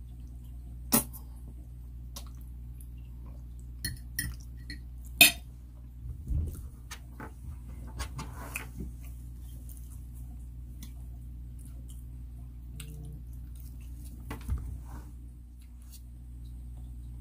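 A metal fork clinking against a plate a few times, the sharpest clink about five seconds in, with small mouth and chewing sounds between, over a steady low hum.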